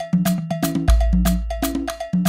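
Background film music: a fast, even percussion rhythm of about six strikes a second with a cowbell-like tone, over deep bass notes, one of which comes in about a second in.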